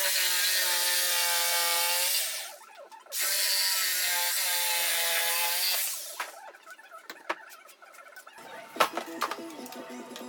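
A JCB jigsaw cuts through a thick live-edge wooden slab in two runs of about three seconds each, with a short pause between. The motor's pitch holds steady under the reciprocating blade. A few scattered clicks and knocks follow once the saw stops.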